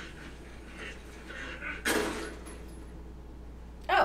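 A single sudden bang about two seconds in, dying away over about a second, over a faint steady low hum.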